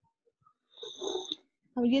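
A person's short breathy exhale with a thin high whistle, about a second in. Speech begins just before the end.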